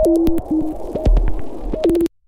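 Electronic techno music: a synth line hops between a higher and a lower note over low kick-drum thumps and short hi-hat ticks.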